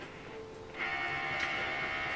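Canon PIXMA TS5051 scanner's carriage motor running. A steady whine with several pitched tones starts about three-quarters of a second in and holds, as the scan head moves at the end of the scan.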